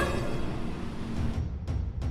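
Suspense background music carried by a low, steady drum rumble, with no clear melody.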